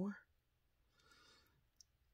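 A woman's spoken word trailing off at the start, then a quiet pause with a faint breath about a second in and a single small click near the end.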